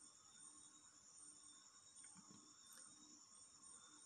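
Near silence: room tone with a faint steady high-pitched background whine.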